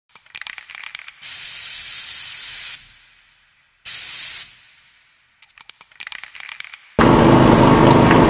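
Intro sound effects: bursts of crackling clicks, then two hissing whooshes, a longer one and a short one, each fading away, with more crackles after them. About seven seconds in, a loud steady din of the outdoor event cuts in abruptly.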